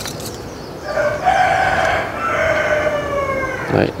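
A rooster crowing once: one long crow of about two and a half seconds, in two parts, with the last note falling in pitch.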